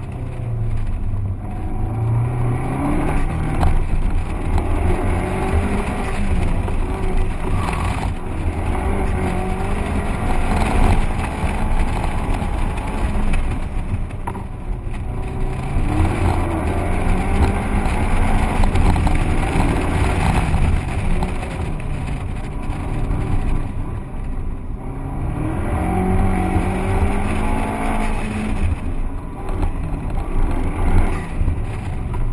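Pontiac Solstice GXP's turbocharged 2.0-litre four-cylinder engine revving up and falling back again and again as the car is driven through an autocross course, heard from inside the open cockpit with the top down.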